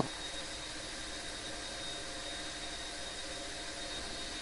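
Steady background hiss and hum of room tone picked up by the microphone, with a faint, steady high-pitched tone.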